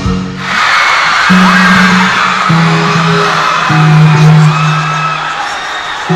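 Pop music playing over a large hall's sound system, with a crowd screaming and cheering from about half a second in.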